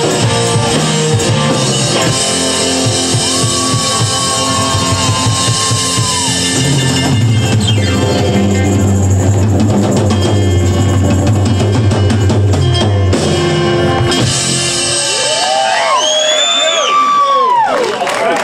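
Live rock band with electric guitar, bass guitar and drum kit playing the last bars of a song, then stopping about 15 seconds in. High gliding whoops follow as the song ends.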